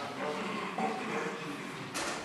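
Indistinct murmur of voices in a large meeting hall during a show-of-hands vote, with a sharp click at the very end.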